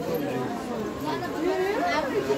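Indistinct chatter of several voices talking, with no clear words.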